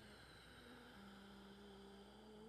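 Near silence: a faint, low, steady hum over light hiss, dropping slightly in pitch about a second in.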